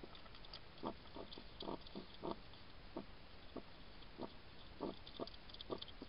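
A European hedgehog chewing dry food close to the microphone: short, irregular chews, about two a second.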